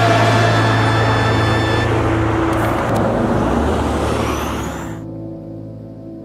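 The tail of a music track gives way to road traffic noise: a vehicle passing close, with a swelling rush and rising whine, cuts off abruptly about five seconds in. A low steady hum is left after it.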